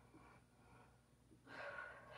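Near silence, then a soft breath from the woman holding the stretch, starting about one and a half seconds in.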